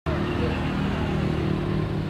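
A motor vehicle engine idling steadily, with faint voices.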